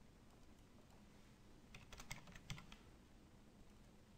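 Near silence, with a quick run of faint clicks from a computer at the desk about two seconds in.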